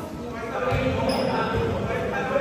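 Indistinct voices of players talking and calling out across an echoing indoor gym, with scattered soft thuds.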